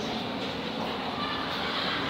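Steady background noise with a faint voice under it.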